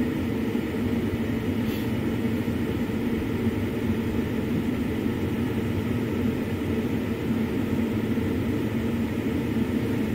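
Steady low hum of an idling vehicle engine, running evenly without change.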